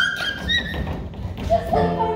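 A brief high voice, then a second or so of shuffling thuds on the wooden stage as two actors come together and embrace; singing with instrumental accompaniment starts near the end.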